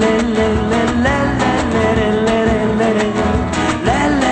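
Live flamenco-style rumba: two Spanish guitars strumming and picking in a steady rhythm under a singer's long held, wordless notes that slide between pitches.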